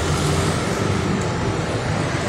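Steady din of road traffic and vehicle engines, heaviest in the low rumble.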